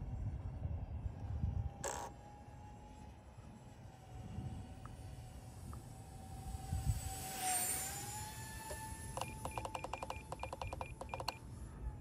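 Twin 30 mm electric ducted fans of a small RC jet whining faintly at altitude as a thin steady tone, its pitch dipping and then rising with a swell of fan rush about seven seconds in as the plane passes closer, over a low wind rumble. Near the end comes a rapid run of short electronic beeps lasting about two seconds.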